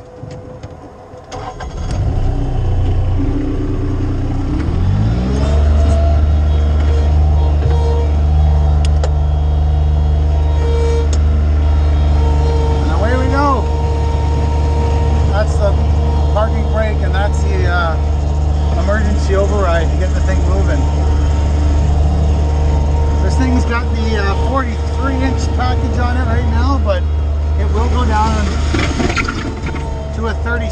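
Bobcat S70 skid-steer's small three-cylinder diesel starting about a second in, revving up a few seconds later, then running steadily. Heard from inside the open cab.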